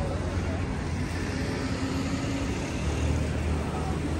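Steady low rumble of city street traffic, with faint background voices.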